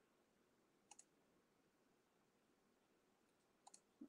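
Near silence, with a faint single click about a second in and two quick faint clicks near the end: a computer mouse being clicked.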